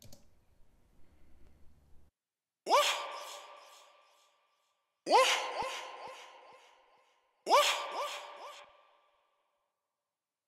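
A short sample played three times, about two and a half seconds apart, each starting with a quick upward pitch sweep and trailing off in a string of fading echoes from a Waves H-Delay plugin. The delay repeats are high-passed, so the echoes keep more top end than low.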